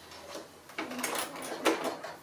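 A few short clicks and rustles, the loudest near the end, as sewn patchwork fabric pieces are handled and drawn out from under a Bernina sewing machine's presser foot.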